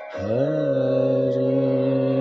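Devotional Sanskrit shloka singing: a male voice slides up into a long held note a fraction of a second in, over a soft steady drone.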